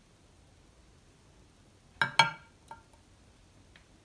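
Mamey sapote pit set down on a plate: two sharp knocks close together about halfway through, with a short ring, then a couple of faint taps.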